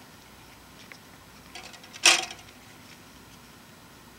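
Claw hammer levering the joystick handle off a slit lamp's base: a few faint scraping ticks, then a single sharp clack with a short ring about two seconds in as the stubborn handle pops free.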